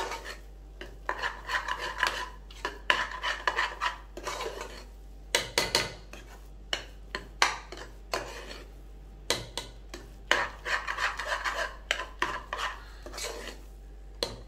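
A metal spoon scraping and clinking against the inside of an aluminium pressure cooker as thick cooked broken-wheat kichadi is stirred. The strokes come in uneven runs with short pauses, with a few sharper knocks of metal on metal.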